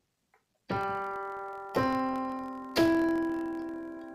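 Yamaha PSR-S970 arranger keyboard in a piano voice playing three notes one after another, G, then C, then E, each rising in pitch about a second apart. The notes are held so that they stack into a C major chord with G in the bass, then fade together.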